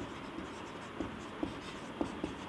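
Marker pen writing letters on a white board, a faint scratching with a few light taps as the tip meets the surface.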